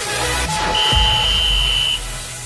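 Electronic dance music with a workout interval-timer signal over it: a shorter lower tone, then a long high beep held for over a second, marking the end of the rest and the start of the next work interval.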